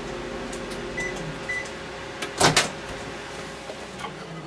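Countertop microwave oven running with a steady hum. Two short high beeps come about a second in, then a loud double clunk midway as the door is opened.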